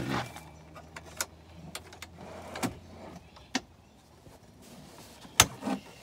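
Sharp clicks and knocks of handling inside a camper van: latches, drawers and the lid of a Waeco portable fridge, the loudest click a little before the end as the fridge lid is opened. Under them a low steady hum fades out about two-thirds of the way through.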